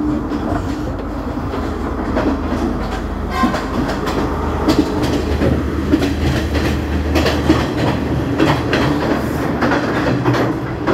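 Moving passenger train heard from inside the carriage: a steady low rumble with the wheels clacking over the rail joints. The clacking grows louder and more frequent from about three seconds in, around the open carriage door.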